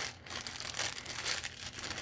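Thin clear plastic packets of treat bags crinkling as they are handled, an irregular run of soft crackles.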